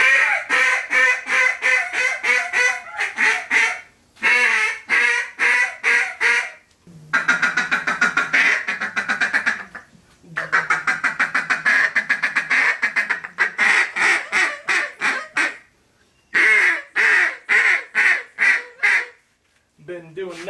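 A hand-blown waterfowl call, played in five fast runs of short, clipped notes, about five or six a second, with brief pauses between runs.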